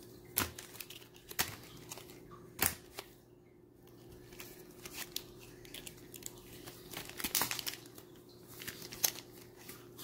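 Foil trading-card booster pack wrappers crinkling and crackling as the packs are handled and sorted in the hand, with a few sharp crackles in the first three seconds and busier rustling toward the end, over a faint steady hum.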